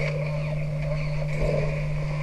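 A steady low hum over a rumbling noise, swelling slightly about halfway through.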